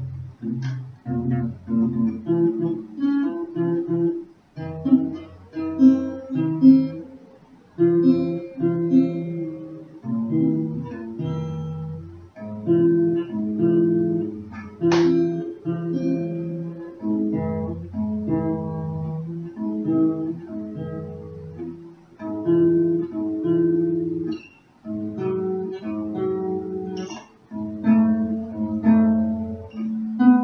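Acoustic guitar played solo and improvised: chords changing about once a second, in short phrases with brief breaks between them.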